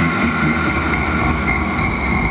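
Train sound effect cut into a hip-hop dance mix: steady high squealing tones held over a low rumble.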